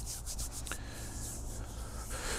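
Faint rustling or rubbing noise over a low steady hum, with a few brief soft strokes in the first second.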